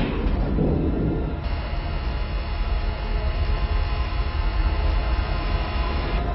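A steady low rumble and hum with several sustained tones, the machine-like drone of the sealed isolation chamber; a higher hiss fills in about a second and a half in.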